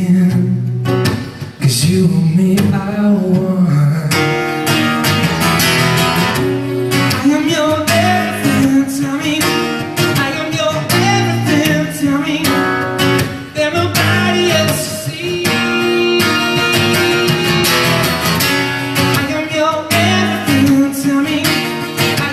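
A man singing, accompanied by his own strummed acoustic guitar, in a live solo performance. The strumming goes on steadily, with a brief dip about a second and a half in.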